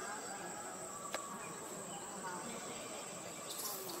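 Steady high-pitched insect drone, with a single sharp click about a second in.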